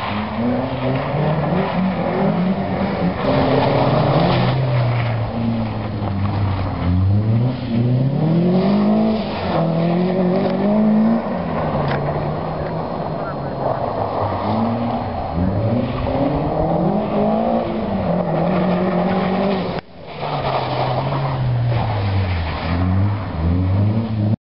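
A car engine driven hard around a tight course, revving up and dropping back again and again, its pitch rising and falling every second or two. The sound breaks off briefly about 20 seconds in.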